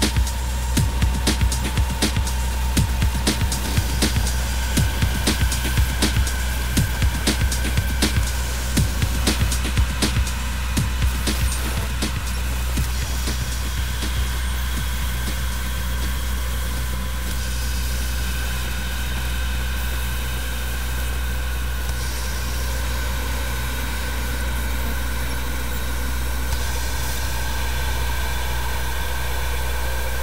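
Darkwave electronic music played live on hardware synthesizers: an electronic drum beat over a deep, steady bass drone. The beat drops out about twelve seconds in, leaving the sustained drone and held synth tones to the end.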